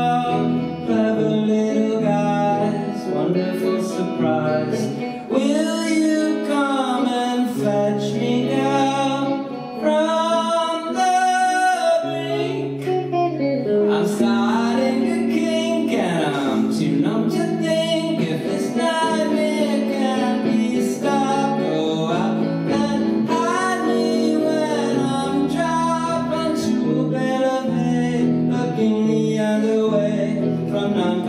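Live song: electric guitar chords with a man singing over them.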